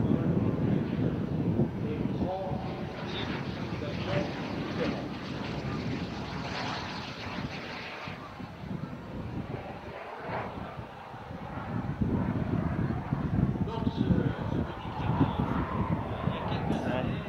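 Twin JetCat P200 model turbojets of a jet-powered Cri-Cri microlight in flight: a steady jet rush that fades around the middle and grows louder again in the last few seconds.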